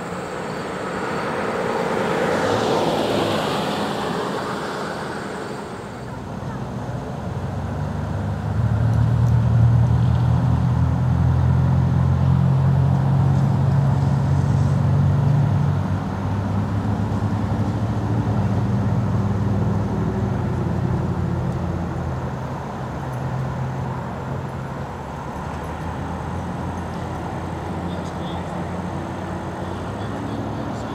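Road traffic: a motor vehicle passes in the first few seconds, then a vehicle engine runs nearby with a low hum that fades after about twenty seconds.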